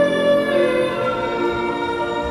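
Sacred song sung with piano accompaniment: long held notes, moving to new notes about half a second in.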